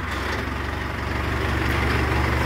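Mahindra Arjun 555 DI tractor's four-cylinder diesel engine running steadily at low revs as the tractor rolls slowly forward in gear, growing slightly louder.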